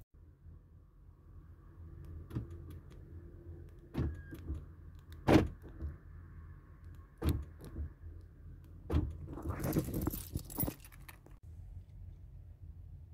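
Van's power door locks actuating by themselves: a series of sharp clicks a second or two apart, the loudest about five seconds in, then a longer clattering burst near the end.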